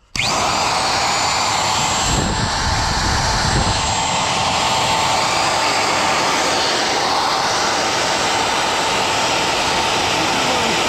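Porter-Cable 90690 router's motor switched on, whining up to speed within a fraction of a second, then running steadily at full speed with a high, even whine.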